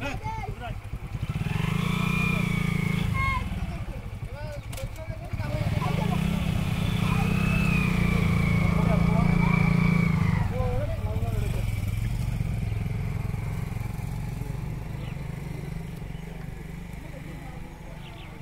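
A motor engine running, louder twice in the first half and then fading away, with voices heard faintly over it.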